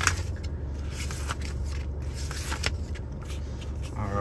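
Paper and handling noise as the vehicle's service booklet is taken out and opened: scraping and rustling with a few sharp knocks, the sharpest right at the start, over a steady low hum in the cab.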